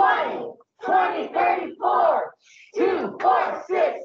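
Several voices chanting a cheer together, shouted syllables in short bursts with two brief pauses.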